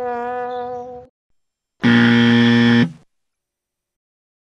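A buzzer sound effect: a held, steady tone for about a second, then after a short silence a louder, harsher buzz lasting about a second that cuts off sharply.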